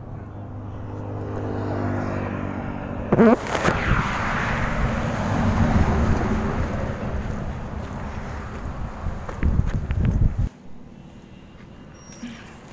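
Road traffic passing close by: an engine hum that grows over the first couple of seconds, a brief wavering tone about three seconds in, then a loud rushing noise of a vehicle going past that cuts off suddenly about ten and a half seconds in.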